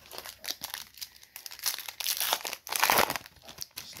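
Foil wrapper of a 2022 Topps Series 2 baseball card pack crinkling as it is handled and torn open. The loudest tearing comes about two to three seconds in.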